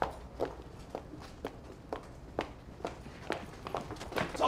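Footsteps of two people walking on a hard street surface, about two steps a second.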